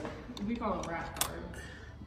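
Coins being pushed into the coin slide of a souvenir penny press machine, a few light metallic clicks, the sharpest about a second in.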